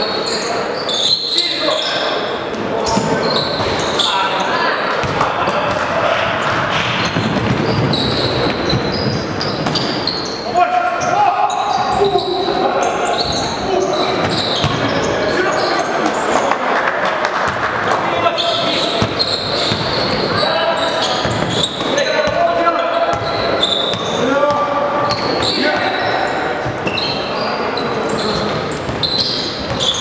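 Live basketball game in a gymnasium: a basketball repeatedly bouncing on the court floor, with players and spectators calling out and the sound echoing around the hall.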